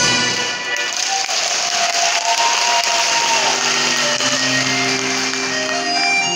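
Audience clapping, a dense crackle, mixed with stage music: a held high note in the first half, then low sustained notes coming in about halfway through.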